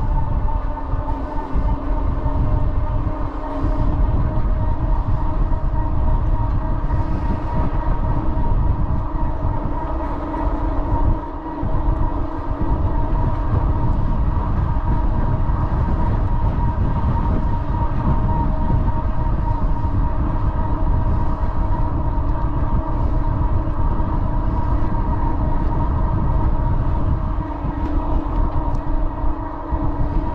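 Wind rushing and buffeting on the microphone of a moving bike, with a steady hum of several fixed pitches underneath. The rush dips briefly twice.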